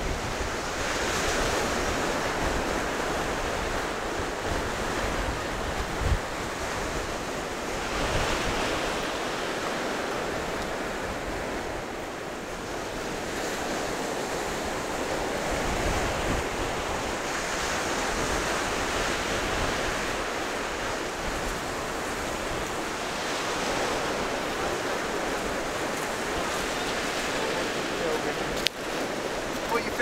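Sea surf breaking and washing up the beach, the noise of the waves swelling and easing every several seconds. Wind buffets the microphone, most in the first several seconds.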